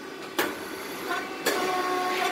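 Rice cake popping machine working: two sharp pops about a second apart, and a steady whine starting about a second in.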